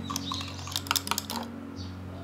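A small wire whisk clinking rapidly against a glass jug while beating egg with salt to dissolve it. The clinking stops about a second and a half in as the whisk is lifted out.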